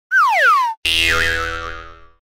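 Edited logo sound effect: a quick falling pitch glide, then a sudden bright ringing chord that fades away over about a second.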